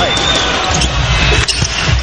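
Basketball game sounds from an arena floor: a ball bouncing and short high squeaks of sneakers on the hardwood court over steady crowd noise, with one sharp knock about one and a half seconds in.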